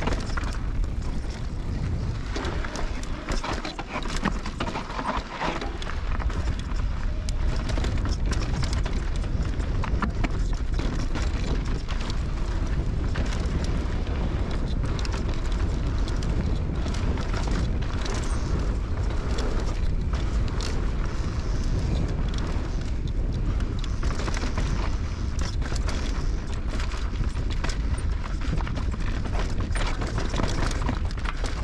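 Norco Range VLT electric mountain bike descending fast over dirt and rock: wind rumbling on the action-camera microphone, tyres crunching over the trail, and frequent knocks and rattles from the bike as it hits rocks and bumps.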